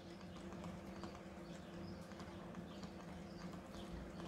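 Faint, irregular tapping and scratching of a stylus handwriting words on a tablet, over a steady low hum.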